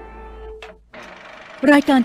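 A short electronic ident jingle ends on a held note, which cuts off about half a second in. Near the end an announcer's voice begins the Thai TV content-rating notice that the programme is suitable for all ages.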